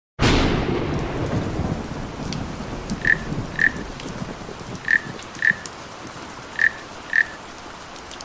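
Thunderstorm sound effect: a sudden crack of thunder that rumbles away over steady rain. Short high chirps, a small animal's calls, come in three pairs over the rain.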